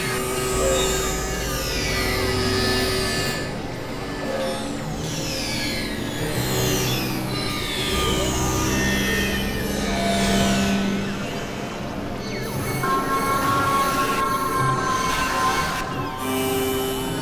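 Dense experimental electronic music made of several tracks layered at once: over and over, high tones slide downward over held tones and a low drone.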